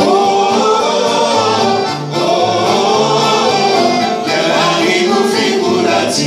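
Live Greek laiko music: a band of bouzouki, accordion and guitar playing, with a voice singing over it.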